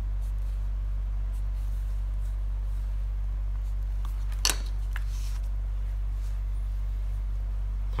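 A wooden ruler and a pen handled on paper: faint scratching and rubbing, with one sharp tap about halfway through and a lighter one just after, over a steady low hum.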